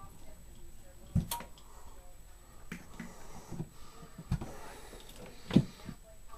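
A few scattered knocks and clicks from handling equipment and cables at close range, the loudest a little before the end.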